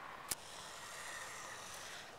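Quiet outdoor ambience with a faint steady high tone, broken by a single sharp click about a third of a second in.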